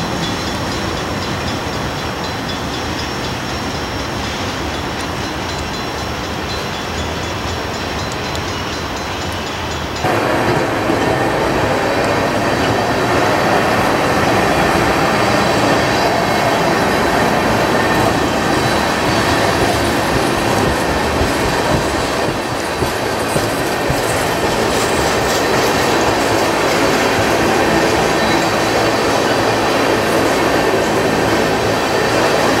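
Freight cars of a CSX train rolling steadily past, steel wheels running over the rails. About ten seconds in the sound jumps louder as a string of loaded tank cars goes by close up.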